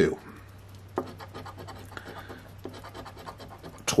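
Scratch-off lottery ticket being scratched, a run of short, faint rasping strokes as the coating is rubbed off the winning-number spots.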